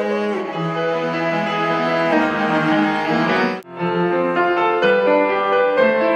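Cello playing long bowed notes over piano accompaniment in an instrumental passage. The sound drops out for an instant about three and a half seconds in, then piano and cello carry on.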